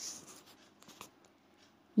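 A pause in the narration holding faint scratching and rustling, with a couple of small clicks about a second in; otherwise close to quiet.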